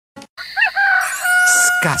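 A rooster crowing once: a short rising start, then a long held note that ends as a man's voice comes in.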